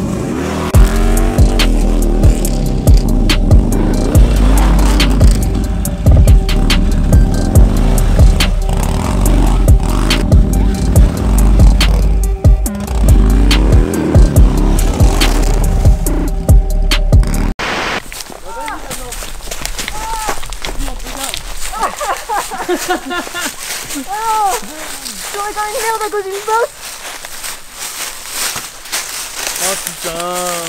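Music with a heavy bass beat over a Harley-Davidson motorcycle engine revving as it is ridden off-road. The music cuts off abruptly about two-thirds of the way in, leaving the engine heard on its own, revving up and down in repeated blips.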